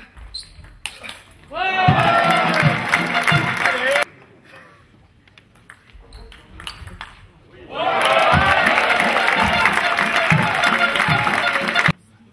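Table tennis rally in a large hall: the ball ticks and knocks off bats and table, between two loud bursts of spectators cheering and shouting. Each burst cuts off suddenly.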